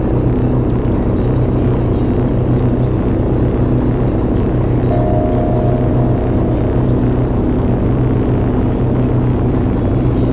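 Live electronic synthesizer drone: dense, steady low tones that hold unchanged, with a short higher tone sounding for about a second midway through.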